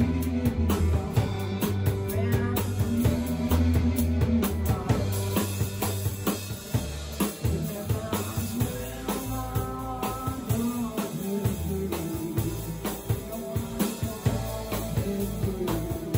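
A rock band playing live with no vocals: drum kit keeping a steady beat under electric bass and guitar.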